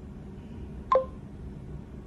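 A single short electronic beep about a second in, two clear tones sounding together and dying away quickly, given as the phone and the motorcycle Android Auto unit make their connection.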